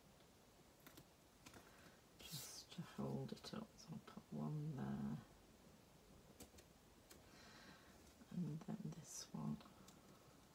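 A person's low wordless voice in two short spells, one about three seconds in and one near the end, over faint clicks of small craft pieces being handled.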